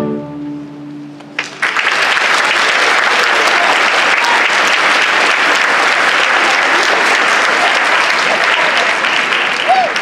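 The string orchestra's final chord rings briefly, then audience applause breaks out about a second and a half in and carries on steadily and loudly. A single voice sounds briefly near the end.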